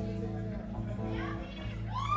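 A live band's held notes ringing on steadily at a low level, with voices from the room rising over them about a second in.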